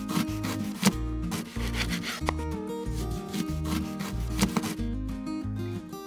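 Small knife slicing through a miniature raw potato and tapping a wooden cutting board, a few sharp cuts, over background music with a steady beat.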